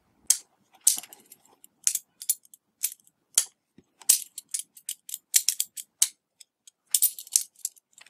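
Scattered sharp clicks and light taps of long-nose pliers and small parts being handled against a metal chassis, irregular and spread across the whole stretch.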